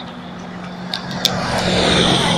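A car driving past on the road alongside, a steady low hum with tyre noise that grows louder toward the end.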